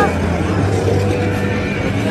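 Outdoor crowd ambience: a steady low hum with a murmur of voices behind it.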